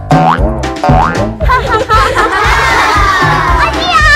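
Upbeat children's background music with a steady bass beat, overlaid with cartoon sound effects: springy boings and quick rising pitch sweeps early on, then a long falling glide in the second half.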